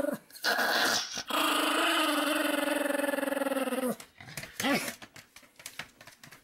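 Pomeranian vocalizing: a short call, then one long steady call lasting about two and a half seconds, then a brief rising and falling call about a second later.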